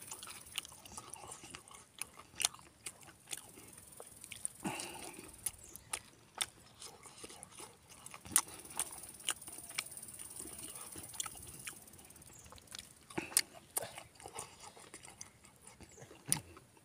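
A person eating by hand, chewing and smacking mouthfuls of rice and pork curry, with many short wet clicks at uneven intervals throughout.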